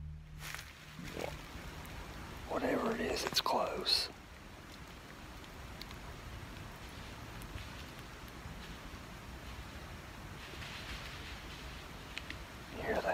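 Night-time recording from inside a tent: a steady hiss, with a short breathy, voice-like sound about two and a half seconds in that lasts over a second. Faint distant footsteps come near the end.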